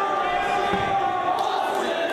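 Wrestling-hall crowd voices holding a steady, chant-like tone, with one dull thud a little under a second in.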